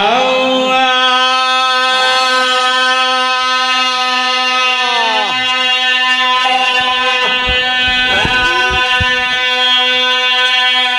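Male voices chanting a single long held note over loudspeakers in a majlis recitation, without words. Other voices glide in and fall away over the held note about halfway through and again near the end.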